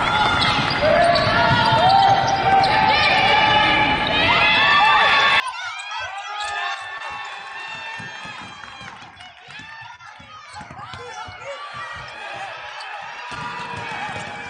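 Basketball game sounds on a hardwood court: sneakers squeaking and the ball bouncing. The first five seconds are louder and denser, then the sound drops abruptly to quieter play with scattered squeaks and bounces.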